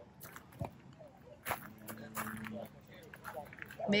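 Faint, indistinct voices of people talking in the background, with a few light clicks and knocks.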